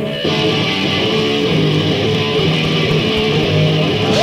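A rock band playing loud on a lo-fi four-track recording, led by strummed electric guitar. The whole band comes in together at the start after a brief pause.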